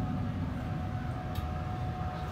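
Mitsubishi traction elevator car travelling down: a steady low rumble of the moving cab with a thin, steady whine above it.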